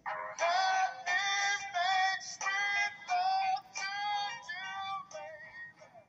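Music with a high sung vocal line, note by note, that stops shortly before the end.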